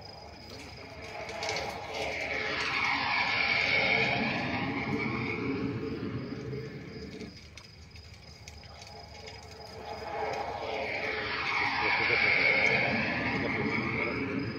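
Two vehicles passing close by one after the other, about eight seconds apart. Each one swells up to a peak and fades away.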